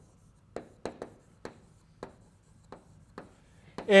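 Chalk on a blackboard as words are written: a series of sharp, irregular taps and short strokes. A man's voice starts right at the end.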